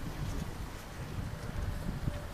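Wind buffeting the camera microphone: an uneven low rumble with no distinct events.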